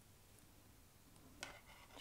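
Near silence: room tone, with one faint click about one and a half seconds in.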